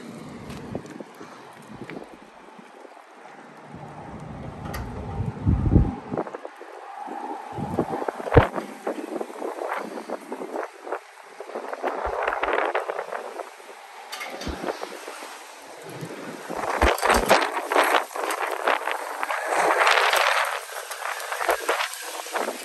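Gusty wind buffeting the phone's microphone in uneven swells, with tree leaves rustling. A few sharp knocks come in between.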